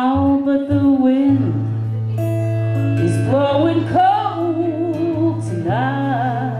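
Acoustic guitar strummed with a rack-mounted harmonica played over it, in a slow blues song. Several harmonica notes bend upward in pitch about three and four seconds in, over a held low note.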